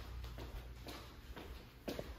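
Faint, soft footsteps, about one every half second, as a person walks toward and up carpeted stairs, over a steady low rumble.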